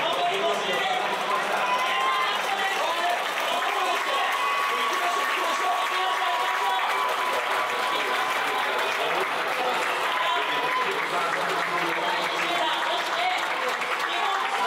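Stadium ambience: a public-address announcer's voice over continuous clapping and crowd noise from the spectators.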